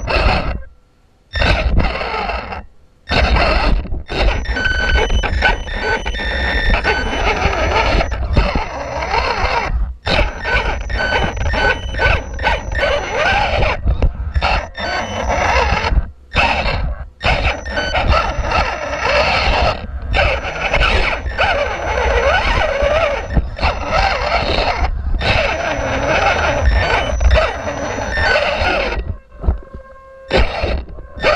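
Electric motor and gear train of a 1/18-scale Losi Mini Rock Crawler, heard from a camera on board, whining at a steady pitch as it crawls over rock and gravel. The drive cuts out briefly every few seconds and starts again.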